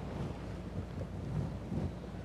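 Quiet room tone of a church sanctuary: a low, steady rumble with no distinct event.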